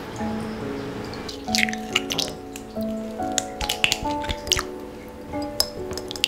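Eggs cracked into a glass bowl: a series of sharp shell cracks and taps with wet drips as the eggs fall in, starting about one and a half seconds in. Soft background music with held notes plays under it.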